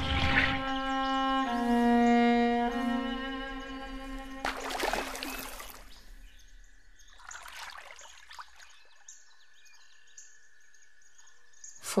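Slow bowed-string music, cello and violin, holding long notes and fading out over the first half. A brief rushing whoosh comes about four and a half seconds in. After that there is only faint ambience: a steady high hum and small scattered chirps.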